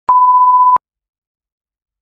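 A single electronic beep: one steady pure tone lasting under a second, starting and stopping sharply.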